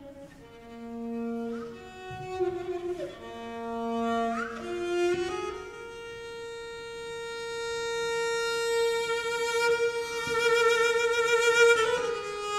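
Cello bowed in slow, sustained high notes, sliding up into several of them. From about halfway one long note is held, with vibrato that widens as it gets louder toward the end.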